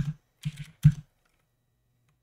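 A few separate keystrokes on a computer keyboard in the first second, typing a password.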